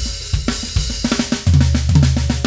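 Drum kit played in a busy groove of snare strokes, bass drum and cymbals. The snare is a black Galaxy Ludwig Acrolite LM404 with a 5x14 aluminum shell, tuned high. A deep, sustained low note comes in about halfway.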